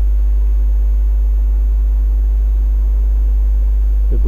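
Steady low electrical mains hum in the recording, unchanging throughout, with a faint high-pitched whine above it.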